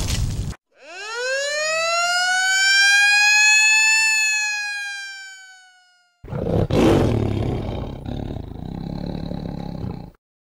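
A siren-like sound effect: one tone that sweeps up in pitch over about three seconds, then slowly sinks and cuts off about six seconds in. A loud, rough noise then takes over, with a sharp burst at its start.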